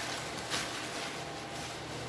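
Plastic bubble wrap rustling and crinkling as it is pulled off boxes inside a cardboard shipping carton, with one short, sharper crinkle about half a second in.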